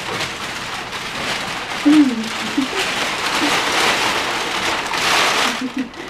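Long sheet of crumpled brown packing paper crinkling and rustling continuously as a person wraps it around her body. A brief vocal sound comes about two seconds in, and the rustling stops just before the end.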